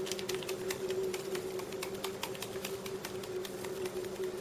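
Fine, irregular crackling clicks from the surface of a clay pot of pinto beans as it nears a boil and seasoning granules are sprinkled onto the foam, over a steady low hum.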